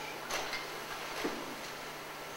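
Slide projector advancing to the next slide: two short faint mechanical clicks, about a second apart, over a steady low hum.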